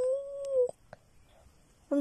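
A small child's voice holding one long, steady note that cuts off a little under a second in, followed by near quiet until her voice starts again at the very end.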